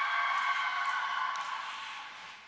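Crowd of women cheering with many overlapping high, sustained calls, fading near the end.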